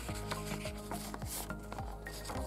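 Paper pages of a hardback photobook turned by hand: several quick rustling swishes, the strongest a little over a second in, with soft background music holding sustained notes underneath.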